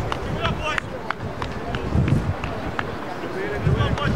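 Open-air sports-ground ambience: faint voices carrying across the field, wind rumbling on the microphone, and a scattering of short sharp ticks and chirps.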